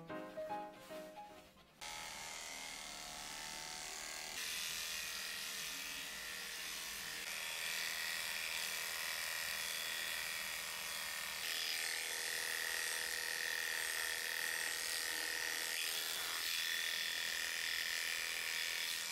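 A short run of background music, then electric pet hair clippers start about two seconds in and buzz steadily as they shear a bichon frise's coat.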